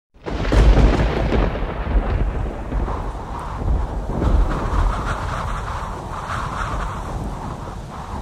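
A deep rumbling noise with a crackly haze above it, loudest just under a second in and slowly easing off.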